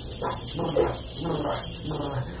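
A two-month-old baby whimpering and fussing in a few short, high-pitched cries after his vaccination shots.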